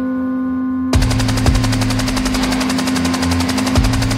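Experimental electronic music: a held low drone with steady tones, then about a second in a rapid, even, machine-gun-like stutter of hiss cuts in over a low pulsing bass.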